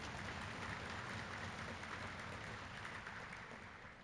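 Audience applauding in a large hall, a faint, steady patter of many hands clapping.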